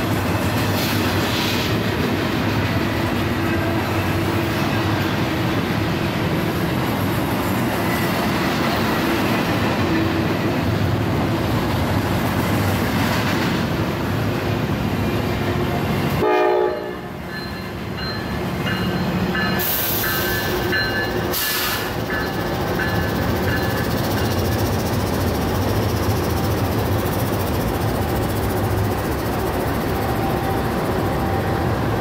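Freight trains passing close by. First a double-stack container train runs by with a steady rumble and the clatter of wheels on rail. After an abrupt change about halfway through, three GE C44-9W diesel-electric locomotives pass running under power, with a few thin high tones sounding briefly a few seconds later.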